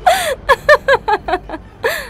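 A frightening, high-pitched laugh: a run of short 'ha' syllables about five a second, each falling in pitch, opening with a breathy burst and with another breathy burst near the end.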